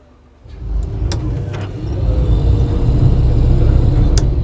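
Tour boat engine run up in reverse to brake for small craft ahead: a low rumble that starts about half a second in and grows louder, with a few sharp clicks.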